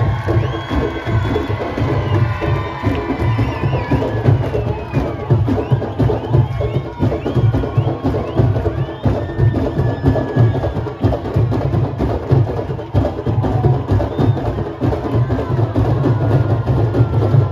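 Candombe drums (tambores) played together in a steady, dense rhythm, with sharp clicks of sticks on the wooden drum shells among the drumbeats. A cheering crowd is heard over the drumming.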